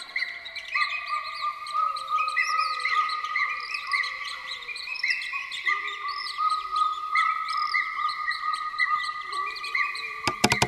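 Forest birdsong ambience: many small bird calls chirping rapidly and overlapping over steady high held tones, with a slow falling whistle in the first few seconds.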